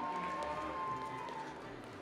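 Footsteps of a person walking across a wooden stage, under a faint steady high tone that fades out about a second and a half in.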